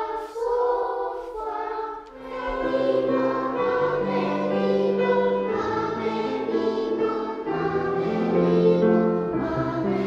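A class of children singing a song together, joined by piano accompaniment whose lower notes come in after about two seconds.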